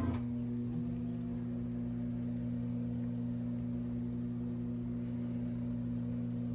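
Steady electrical hum of several low pitches, held without change, from VHS playback over a blank, snowy stretch of tape between previews. A short click right at the start.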